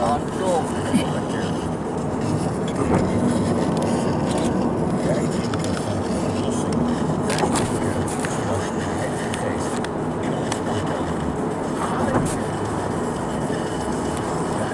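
Steady road and engine noise heard inside a car's cabin while driving at speed.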